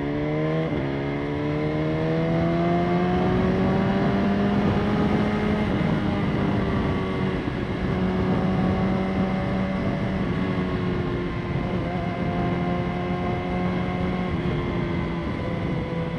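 BMW S1000RR's inline-four engine pulling at cruising speed. Its pitch climbs slowly over the first five seconds, then holds steady with small dips, over a constant rush of wind and road noise.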